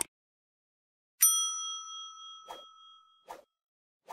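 A bright bell-like ding sound effect about a second in, ringing out and fading over about two seconds. It is framed by short soft clicks, one at the start and two more after the ding.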